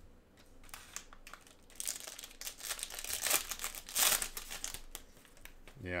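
A foil trading-card pack being torn open and its wrapper crinkled. There is a run of crackling from about two seconds in to nearly five seconds in.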